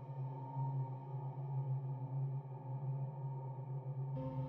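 Dark ambient background music: a low, steady drone that pulses slowly, with a faint higher tone held above it.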